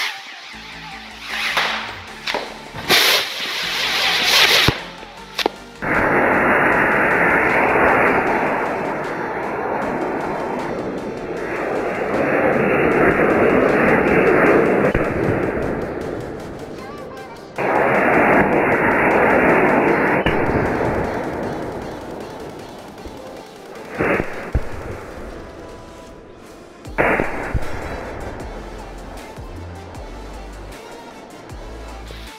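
Diwali firework rockets strapped to a table fan's blades burning, each giving a loud rushing hiss as it drives the blades round. Short bursts come first, then one long hiss of about ten seconds, then another that fades away. Two sharp cracks follow near the end.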